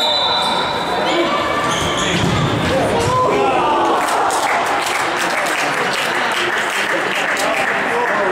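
Futsal ball being kicked and bouncing on a wooden indoor court, with several voices calling out across an echoing sports hall.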